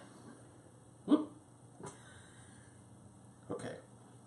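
A short, rising vocal "whoop" about a second in, made for fun while buttercream is spread with a spatula. It is followed by a faint click and a brief voice sound near the end, over quiet room tone.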